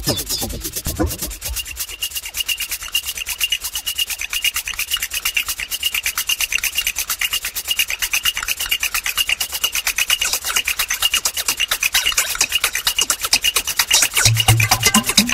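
Rhythmic scraping percussion in the background music: a fast, even rasping pattern with no melody or bass under it.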